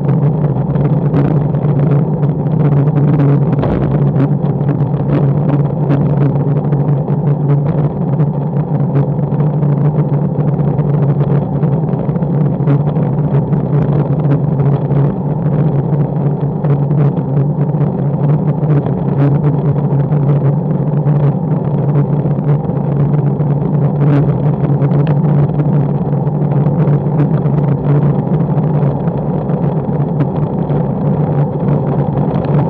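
Wind rushing over the microphone of a bike-mounted action camera on a road bike moving at about 35 to 45 km/h, with road rumble and many small knocks from the rough, patched tarmac. The sound is loud and steady, with a strong low hum.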